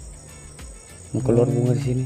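Crickets chirping in a fast, even pulse. From a little past halfway a man's voice holds one long, steady sound over them.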